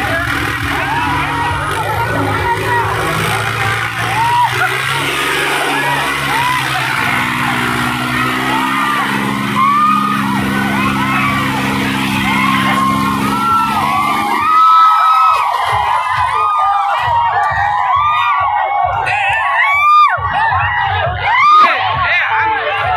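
Eicher 557 tractor's diesel engine running with a steady drone under a shouting crowd. About two-thirds of the way through, the engine drone drops away and the crowd's shouts and whoops take over, rising to cheering near the end.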